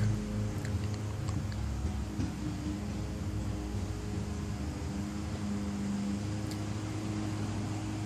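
A steady low machine hum with a few faint clicks now and then.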